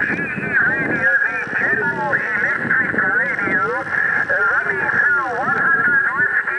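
A distant station's voice received through a Kenwood TS-50 transceiver's speaker, distorted and hard to make out, over steady radio static.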